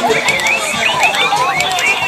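Several battery-powered animated toys sounding at once: a jumble of quick electronic chirps, several a second, over tinny recorded voices.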